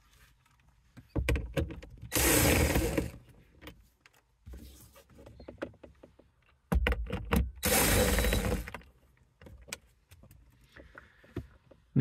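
Power driver with a 7 mm socket backing out two screws that hold the dashboard trim, in two runs of about a second each, the first about two seconds in and the second about eight seconds in.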